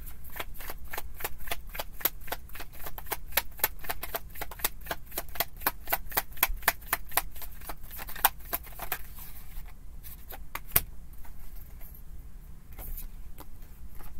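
A deck of tarot cards being shuffled by hand, the cards clicking rapidly at about five a second. The clicking stops about nine seconds in, leaving a few scattered clicks.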